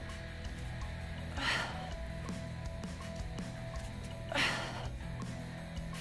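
Background music, with two short, hard exhalations from a woman straining through a plank exercise, one about a second and a half in and another about four and a half seconds in.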